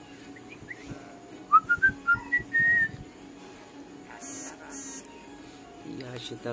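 A short run of whistled notes, climbing step by step in pitch and ending on one longer held note.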